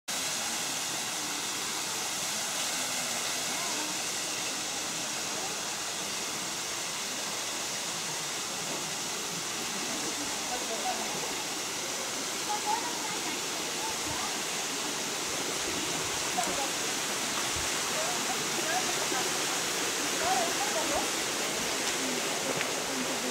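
Steady rushing of flowing stream water. Faint distant voices come in during the second half, with a few soft thuds.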